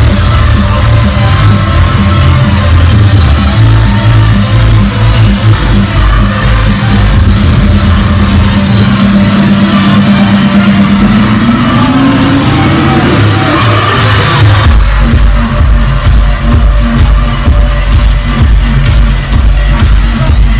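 Loud electronic dance music from a club sound system, heard from inside the crowd on a phone. About halfway through, the bass falls away and a rising tone builds; the heavy kick-drum beat comes back about three-quarters of the way in.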